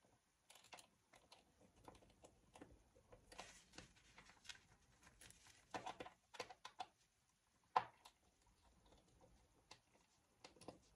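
Faint small metal clicks and scrapes of a precision screwdriver working a screw out of a metal fitting on a handbag panel, with light handling of the fabric; a cluster of louder clicks about six seconds in and one sharp click just before eight seconds.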